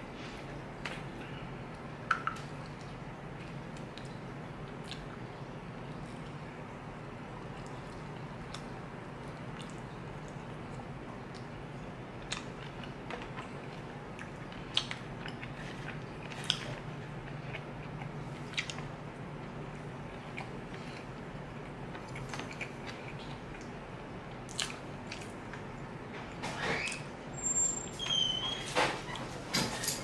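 Close-miked chewing and mouth sounds of a person eating, with scattered sharp clicks over a steady low hum. The eating sounds grow louder and busier for the last few seconds.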